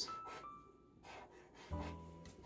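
Short strokes of a black marker rubbing on paper as small squares are drawn, over quiet background music with a few held notes.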